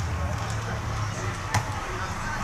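Pitch-side sound of an outdoor football match: a steady low rumble with distant players' voices, and one sharp knock about one and a half seconds in, like a ball being struck.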